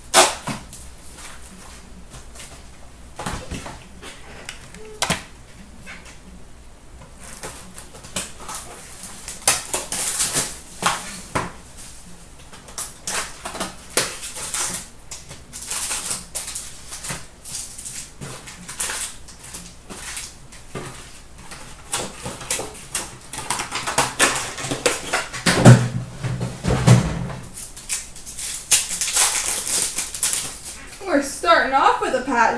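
Hands opening a cardboard hobby box of 2015-16 Fleer Showcase hockey cards and tearing into the packs: a sharp snap at the start, then rustling, crinkling and clicking of cardboard and pack wrappers that gets busier toward the end, with a few dull knocks near the end.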